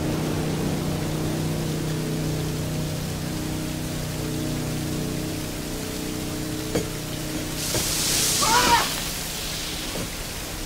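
Heavy water pouring and spraying down in a steady rush, as seawater floods a ship's compartment, with a low steady drone underneath that fades out about three-quarters of the way through. Near the end a man shouts.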